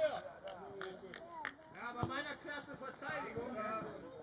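Footballers' voices shouting and calling to each other during play, with a thump about halfway through.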